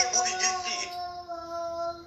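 A voice singing one long held note that sinks slightly in pitch, with music underneath.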